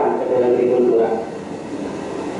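A man speaking Italian on an old film soundtrack played back over loudspeakers in a hall, clearest in the first second and softer after.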